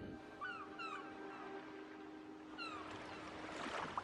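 A small animal calling in short, high, falling cries, several in quick succession, over faint sustained music notes.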